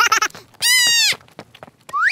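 High-pitched cartoon voice clip: a few quick chattering syllables, then one long held high note lasting about half a second, and a quick rising-and-falling glide near the end.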